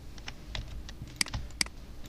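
Computer keyboard keys tapped: a scattering of light clicks, with two sharper ones in the second half.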